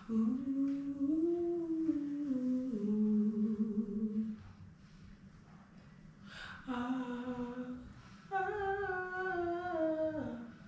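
A woman singing wordless background-vocal lines, the voice alone with no backing track heard. A long held phrase steps down in pitch over about four seconds; after a pause come two shorter phrases, the last sliding down at its end.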